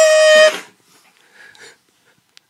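A single steady, high, reedy held note that cuts off about half a second in, then only faint small sounds.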